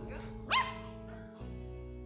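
A small dog, a white poodle, gives one short yelp that rises sharply in pitch about half a second in. About a second and a half in, steady held music chords begin.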